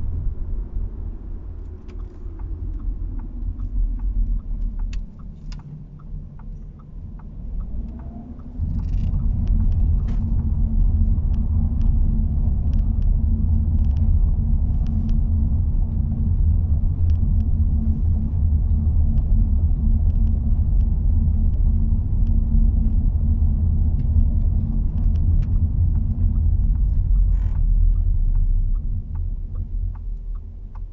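Low, steady rumble of road and drivetrain noise inside the cabin of a moving 2021 Audi A4 Avant. It is somewhat quieter for a few seconds, steps up suddenly about eight and a half seconds in, holds there, and eases off near the end.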